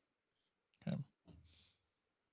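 Near silence, broken about a second in by one brief, soft voice sound.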